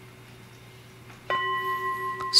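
A ritual bell struck once about a second in, then ringing on with a clear, steady tone marking the change to the next stage of the liturgy.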